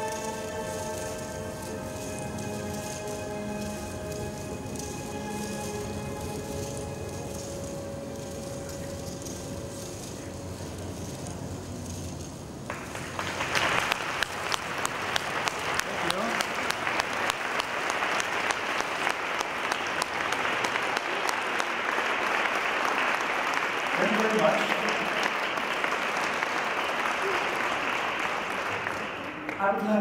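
Film soundtrack music with long held tones, then about halfway through an audience breaks into applause, a dense patter of many hands clapping that goes on until just before the end.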